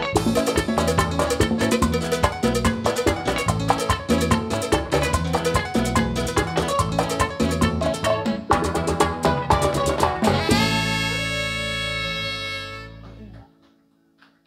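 Live tropical dance band playing an instrumental passage, with guitars, drums and percussion driving a fast beat. About ten and a half seconds in, the band stops on one long held final chord that fades out, ending the song.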